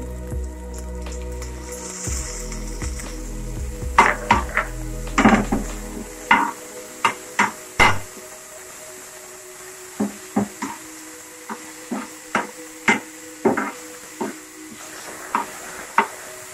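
A metal spoon scraping and knocking against a flat pan as chopped onions and tomatoes are stirred in hot oil, a series of sharp strokes starting about four seconds in, over steady background music.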